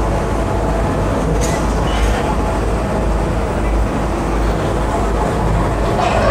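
Demolition excavator running steadily, with its crusher jaws working on the concrete structure; two sharp knocks about a second and a half and two seconds in. Road traffic passes.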